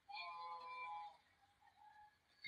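A faint electronic chime of several steady tones sounding together for about a second, followed near the end by a fainter single tone.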